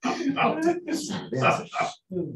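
Speech: a person talking in short phrases over a video-call connection.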